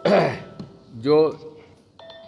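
A man clears his throat once, a short harsh burst right at the start, followed about a second later by a spoken word.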